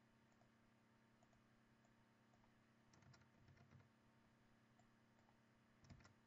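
Near silence with faint clicks from computer input: a short run of clicks about halfway through and one more click near the end.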